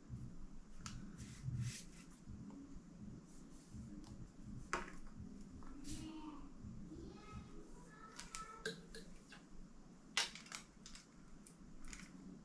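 Quiet handling noises of a fishing rod and reel set: scattered light clicks and taps at irregular moments.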